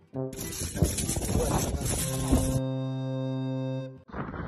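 Edited-in music sting over a title card: a loud rushing burst for about two seconds, then one held chord that cuts off abruptly near the end.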